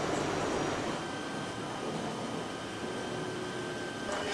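Steady indoor background hum and hiss, like air conditioning, with a few faint high steady tones from about a second in. No distinct event stands out.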